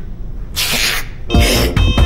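A short breathy burst of noise about half a second in, then cartoon background music with a heavy beat and steady electronic tones starts about a second later.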